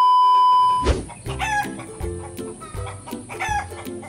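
A steady high test-tone beep for about the first second, then background music with a rooster crowing twice, about two seconds apart.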